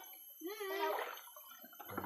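A small child's voice: one short, high-pitched wordless vocalization that rises and falls about half a second in, with a fainter one near the end.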